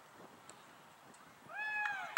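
A short, shrill, high-pitched shout about one and a half seconds in. It rises at the start and is then held, over faint outdoor background.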